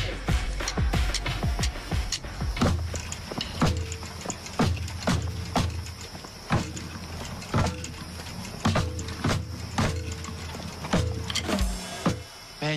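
Music with sharp, unevenly spaced drum hits over a steady low bass line.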